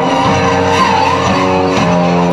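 Live post-rock band music: sustained electric guitar chords, with a high note wavering up and down in pitch above them during the first second. The chord changes twice near the end.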